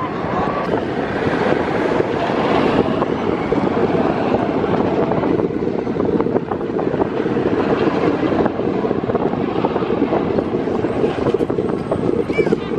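Bolliger & Mabillard stand-up roller coaster train running down its drop along the steel track: a steady, loud noise of the train on the track that builds over the first second or two and holds.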